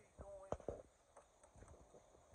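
Quiet steps in slide sandals on concrete: two sharp slaps about a fifth of a second apart, after a brief faint voice sound, with faint ticks afterwards.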